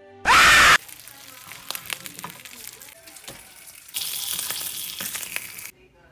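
A short, loud burst with a rising pitch near the start, then faint clicks, and from about four seconds in a steady sizzle of food frying in a pan that cuts off just before the end.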